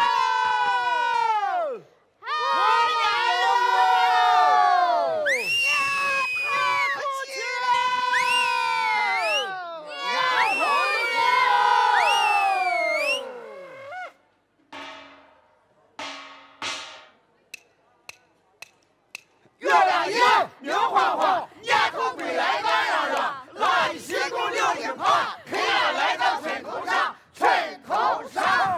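Laoqiang opera performers shouting long calls together in unison, several in a row, each held and then falling away in pitch. After a short lull with a few scattered knocks, fast clattering percussion from wooden stools struck with sticks comes in under the voices.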